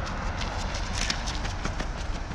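A runner's shoes striking the asphalt road in quick, even footfalls as the runner passes close by, over a steady low rumble of wind on the microphone.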